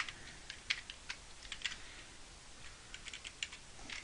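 Computer keyboard being typed on: a run of light, irregular key clicks.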